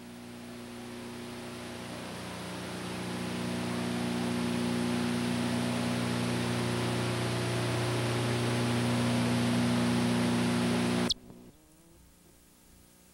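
Videotape audio hiss with a steady low electrical hum, from a stretch of tape with no programme sound. It swells up over the first few seconds, holds steady, then cuts off suddenly with a click near the end.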